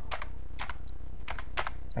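Computer keyboard keys pressed a few times, in two small clusters, as PIN digits are typed into a form.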